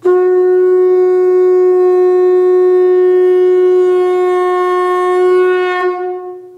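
Conch shell (shankha) blown in one long, loud, steady note that wavers slightly near the end and begins to fade.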